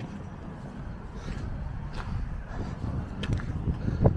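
Low steady outdoor rumble of distant road traffic, with a few faint ticks.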